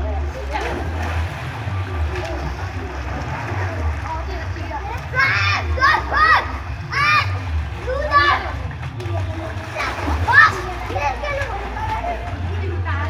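Children splashing and shouting in a swimming pool: a steady wash of splashing water, with bursts of high children's calls and shouts about five seconds in and again near ten seconds. A steady low hum runs underneath.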